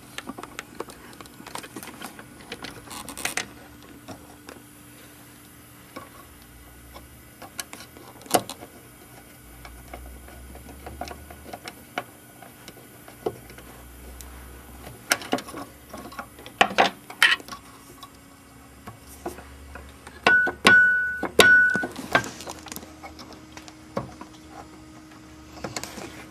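Small clicks and knocks of hand work on a Wurlitzer 200 electric piano's hammer action as the refitted hammer's screw is tightened. About twenty seconds in, the re-adjusted treble note is struck several times in quick succession, each a short high tone, to test the new hammer strike line.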